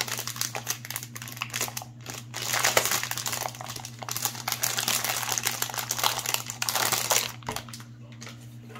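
Clear cellophane wrapping crackling and crinkling as hands pull it off a white plastic brush washer, loud and uneven; it dies down about seven seconds in.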